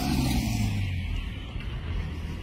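Car engines running as vehicles drive off across a dusty yard, a steady low engine sound.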